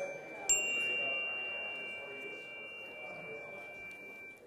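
A small struck chime rings once about half a second in, its high, pure tone holding and slowly fading over about four seconds. It is the signal that calls the room back to attention, over a fading murmur of audience conversation.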